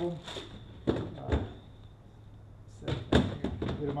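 Clear plastic tackle boxes knocking and clunking as they are set down and slid into a boat's storage compartment. There are a couple of knocks about a second in and a louder cluster of knocks near the end.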